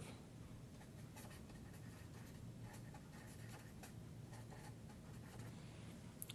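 Felt-tip marker writing on paper: a run of faint, short strokes as words are written out.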